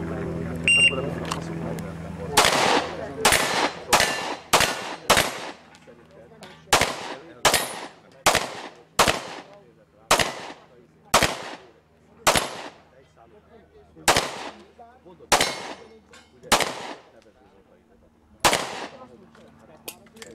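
A shot timer gives a short start beep, then an HK P2000 pistol fires about eighteen shots, each ringing out briefly. The shots come roughly two-thirds of a second apart, with two longer pauses of a second or two between strings.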